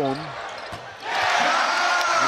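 Arena basketball sounds: a ball bouncing on the court, then about a second in the home crowd breaks into a sudden loud cheer for a made three-pointer.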